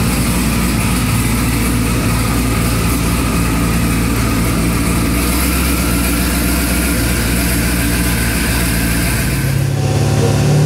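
Twin-turbocharged LS-based V8 in a Cadillac CTS-V idling steadily. Just before the end the sound changes abruptly to a higher, louder engine note.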